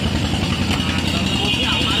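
An engine idling steadily nearby, a low, evenly pulsing rumble.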